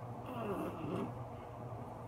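A toddler's brief wordless vocal sound, its pitch falling and then rising, lasting under a second, over a steady low hum.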